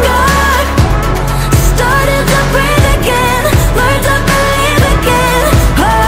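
Pop song playing: a female lead voice sings the lyrics over a steady beat and bass.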